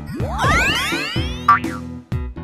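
Cartoon sound effect: a rising swoop that climbs in pitch for about a second and a half, then ends in a short, sharp pop, the loudest moment, over upbeat children's background music.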